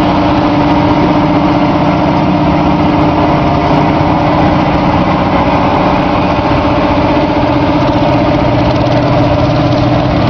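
Big Bud 16V-747 tractor's Detroit Diesel 16V-92 V16 two-stroke diesel running steadily at low speed as the tractor drives slowly past.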